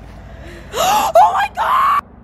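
A person's high-pitched excited screaming in three loud bursts, the first rising in pitch and the last held, cut off suddenly at the end.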